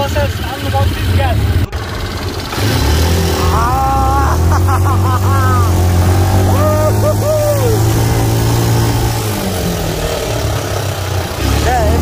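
Quad bike engine running at a steady pitch as it is ridden over sand, with a man's voice calling out over it.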